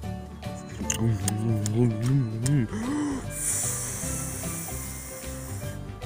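A steady high hiss, a cartoon sound effect of a bubblegum bubble being blown up, starts about halfway through and runs for nearly three seconds over light background music. Before it comes a low, wavering hum like a voice going "mmm".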